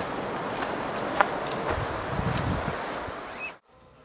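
Hikers walking a dirt trail with trekking poles, over a steady rushing outdoor hiss. There is a sharp click about a second in and a few soft low thuds of footfalls around two seconds. The sound cuts off abruptly just before the end.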